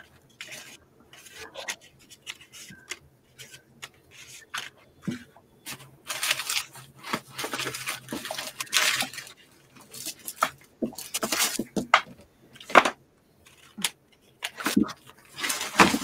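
Paper and craft supplies being rummaged through and handled: irregular rustling with small clicks and clatters, busiest in the middle of the stretch.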